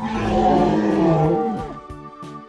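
Dinosaur roar sound effect: one loud, rough roar of about a second and a half that falls in pitch as it fades, over background music.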